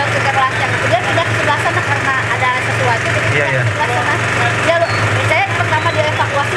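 Several people talking over one another, with a steady low motor hum running underneath.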